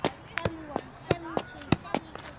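A football kicked up again and again during kick-ups, about three sharp strikes a second in a steady rhythm. A voice is heard between the kicks.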